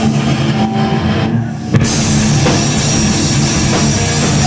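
Hardcore punk band playing loud live: distorted electric guitar and a drum kit. About a second and a half in, the cymbals briefly drop out, then a sharp crash brings the full band back in.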